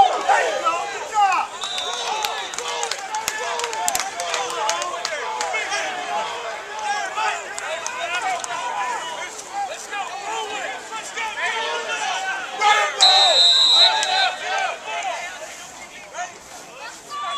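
Many voices of football players and coaches talking and shouting over one another. A brief faint whistle sounds about two seconds in, and a louder whistle blast lasting about a second comes near the end.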